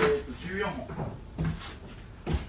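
A sharp knock at the very start, the loudest sound, then short wordless vocal sounds from a man.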